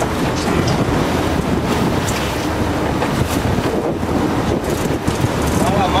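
Steady wind rushing over the microphone on a moving sportfishing boat, with the rumble of the boat and the sea running beneath it.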